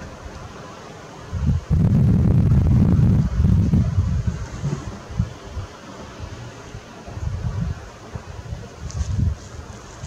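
Wind buffeting the microphone in gusts, a low rumble that is loudest from about one to four seconds in, with smaller gusts near the end.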